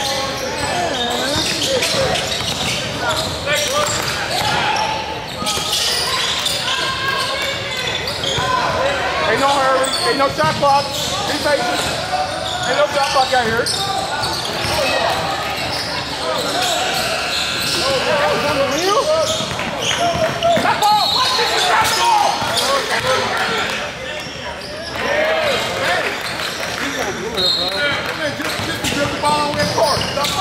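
Basketball game in a large gym: a continuous mix of spectators' and players' voices echoing in the hall, with a basketball being dribbled on a hardwood court and a few short high squeaks.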